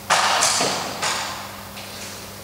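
Close handling rustle: three sudden swishing rustles within the first second, the first the loudest, fading out by the end.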